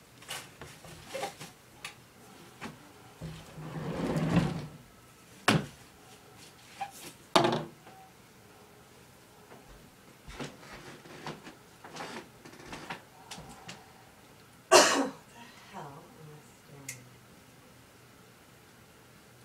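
Scattered household knocks and bumps in a small room, with sharp knocks about five and a half, seven and a half and fifteen seconds in. A brief rushing noise swells and stops about four seconds in.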